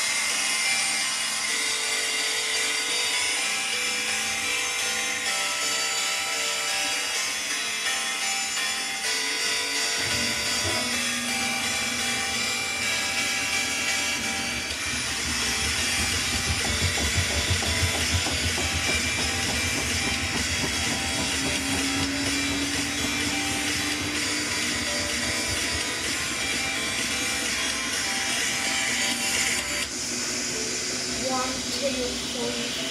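Samsung front-loading washing machine running, its drum motor starting to turn about ten seconds in with a low rumble and a motor tone that rises slowly near the middle, over background music.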